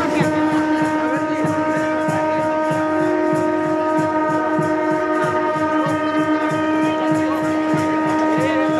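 Sustained horn-like tones held at one pitch, with a second slightly higher tone joining for a couple of seconds in the middle, over a steady low rhythmic beat of about three strokes a second.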